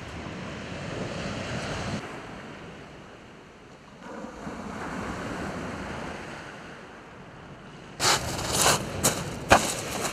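Sea waves washing on the beach, the noise swelling and fading every couple of seconds. About two seconds before the end it gives way to a louder run of sharp clicks and knocks.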